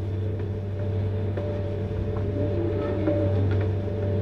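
A steady low hum with faint held tones above it, and no clear events.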